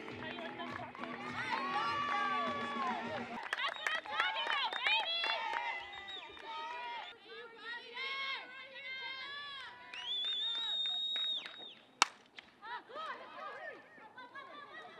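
Background music that stops a few seconds in, followed by voices calling and cheering on a softball field, with one sustained high call. About twelve seconds in comes a single sharp crack of an aluminium bat hitting a softball.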